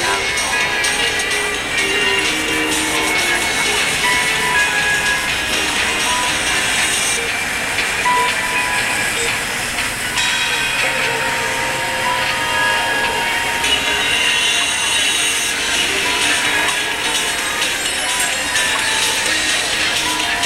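Busy city-crossing street ambience: music and amplified voices from large advertising video screens and shop speakers, over crowd murmur and passing traffic.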